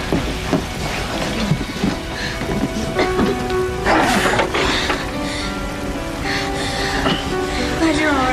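Dramatic background music with held chords that fill in about three seconds in, over a steady rain-like hiss and crackle with scattered knocks.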